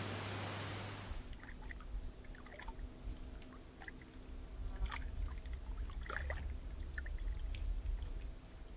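After about a second of indoor room tone, quiet waterside ambience: water lapping and trickling against a rocky shore over a low rumble, with scattered short splashes or ticks.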